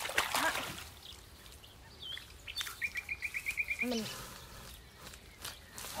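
Rustling and splashing of gloved hands pulling water celery out of a shallow muddy ditch, with a bird's quick trill of about nine notes in the middle.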